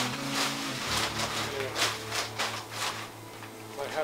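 A steady low electrical hum, with faint voices in the background and light rustling and clicks of handling.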